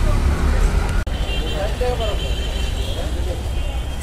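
Street ambience: a steady low rumble of road traffic with faint voices of people talking in the background, briefly cut off about a second in.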